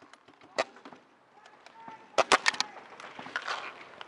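Paintball markers firing: a single sharp pop about half a second in, then a quick burst of five or six shots a little after two seconds in.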